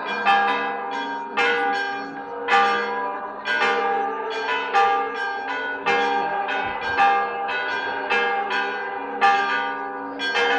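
Church bells ringing: several bells of different pitch struck in turn, each stroke ringing on into the next.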